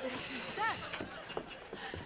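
A wooden front door being unlatched and opened: a few faint clicks and knocks from the handle and latch, with a short voice-like sound about half a second in.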